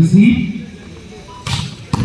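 A loud shout at the start, then two sharp smacks near the end, about half a second apart: a volleyball being struck in play.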